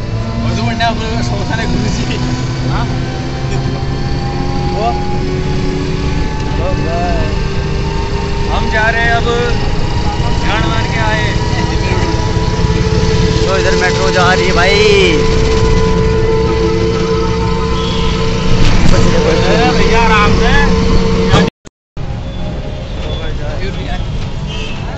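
Three-wheeled auto-rickshaw underway on the road, its engine giving a steady drone with a slowly rising pitch over road noise, and scattered voices over it. The sound cuts out for about half a second near the end.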